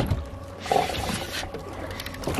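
Water sloshing and trickling at the side of a boat over a steady low rumble, with a short louder sound a little under a second in.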